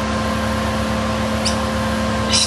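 Steady machine hum: an even drone with several constant tones, like a fan or motor running, with one brief high sound about one and a half seconds in.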